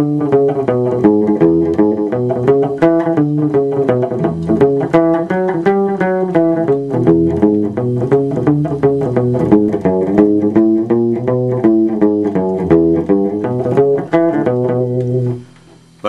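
Electric guitar playing a blues backing pattern in E: a bass line on the low strings under a constant picked right-hand rhythm, the other strings left ringing rather than muted. The playing stops suddenly shortly before the end.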